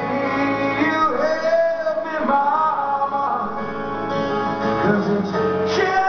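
Live rock song: a man singing held, gliding notes over a strummed acoustic guitar and band backing.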